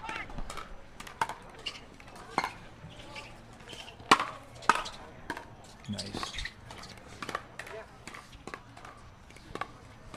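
Pickleball paddles hitting a plastic ball back and forth in a rally of net exchanges: a run of sharp pops at uneven spacing, the two loudest about four and five seconds in.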